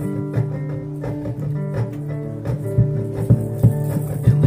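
Guitar music: plucked notes ringing over held chords at an even pace.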